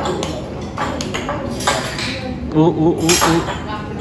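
Cutlery and dishes clinking on a table in a few sharp clicks, with a voice going "oh oh oh" about two and a half seconds in.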